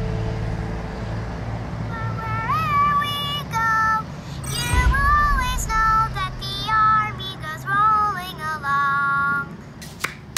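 A young girl singing a short song, a run of high sung notes starting about two seconds in, heard over a laptop video call. A low steady hum runs underneath.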